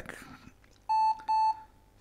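Two short, identical electronic beeps from an IBM ThinkPad R40's internal speaker, a little under half a second apart, at one steady pitch. They are the BIOS power-on self-test error signal for a failed hard disk (error 0200, Failure Fixed Disk 0).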